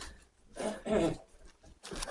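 Two short, low murmurs from a person's voice, like a hummed "mm" or a mumbled word, about half a second and a second in, with faint noise between them.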